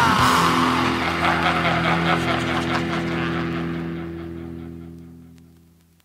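Heavy metal song ending: a falling guitar slide right at the start gives way to a final distorted electric guitar and bass chord, which rings out and fades to silence over about five seconds.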